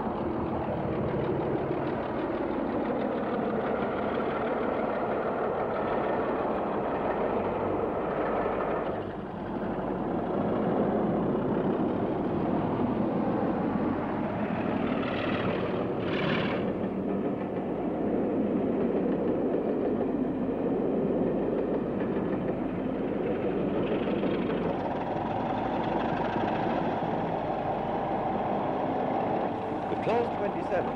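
Diesel-electric locomotive running under power with a train, a steady engine sound. The sound breaks and changes about nine seconds in.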